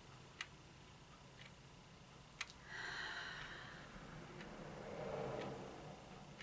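A clock ticking quietly about once a second, with one slow deep breath through the middle: a drawn-in hiss, then a softer breath out.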